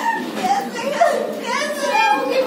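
Voices talking, children's voices among them.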